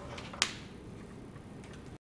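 A single sharp click about half a second in, over quiet room tone, with a few faint ticks after it.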